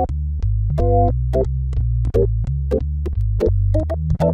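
Roland Juno-106 synthesizer playing an organ patch: held bass notes under short, rhythmic chord stabs, each stab starting with a click.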